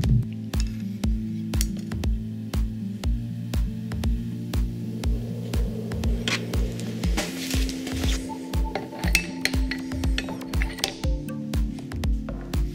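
Background music with a steady beat, about two beats a second, over sustained chords.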